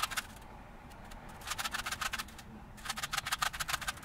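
A Rubik's cube being twisted quickly by hand: two runs of rapid plastic clicking and scraping, each just under a second long, with a short pause between them.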